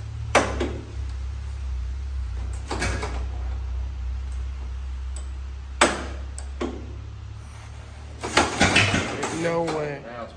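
Hand-cranked 1922 Mack AB truck engine catching and running with a low steady rumble, then dying out about eight seconds in amid a quick run of metal clanks. A few single sharp metal clanks from the crank come earlier.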